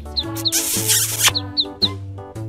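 Background music with a steady bass line, over which a duckling peeps in short, high, falling chirps several times. A brief hiss sounds from about half a second in to just past one second.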